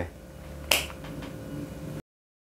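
A single sharp click, like a finger snap, about three-quarters of a second in, over a faint low hum.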